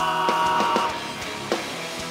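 Rock band playing live: a long held note breaks off about a second in, and the drums carry on beneath a quieter band sound.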